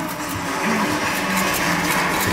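Applause from a chamber full of people, building steadily, with a voice faintly beneath it early on.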